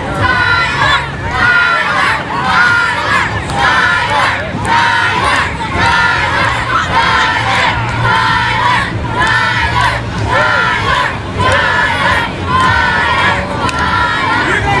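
Ringside wrestling crowd, with many children's voices, chanting in unison, about one loud shout a second.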